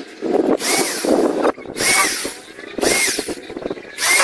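Cordless drill boring holes through wooden planks in three short bursts, its motor whine rising and falling with each trigger pull.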